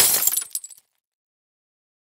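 Sound effect of a jar smashing: one sharp crash, then pieces clattering and dying away within about a second.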